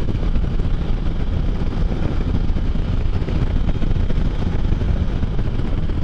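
Can-Am Spyder three-wheeled motorcycle cruising at a steady speed: an even, deep rumble of engine mixed with wind and road rush, with no distinct events.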